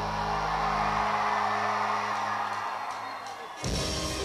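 Live rock band holding a sustained chord whose bass drops away about a second in, under a swell of crowd cheering; near the end the band comes back in abruptly with a louder, busier passage.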